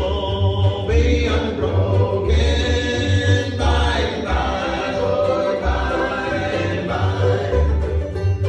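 Bluegrass band singing a gospel song in several-part harmony, with an upright bass playing a steady pulse of low notes beneath the voices and acoustic strings (banjo, fiddle).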